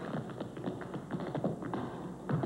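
Tap shoes of two dancers striking a stage floor in quick, uneven runs of taps.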